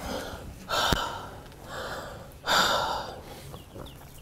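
A woman breathing heavily and gasping in distress, with two loud breathy gasps about a second and two and a half seconds in and a weaker breath between them.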